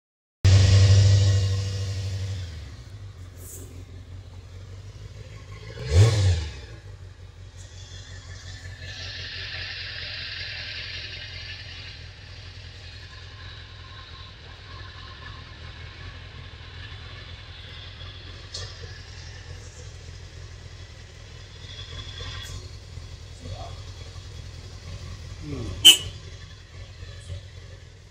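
Kawasaki ZZR400's inline-four engine heard at its exhaust muffler. It runs at high revs just after it begins, falls back to a steady idle, blips the revs briefly about six seconds in, then idles on. A sharp click comes near the end.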